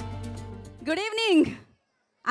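Background music fading out, then a single drawn-out vocal sound from a woman's voice about a second in, rising and falling in pitch.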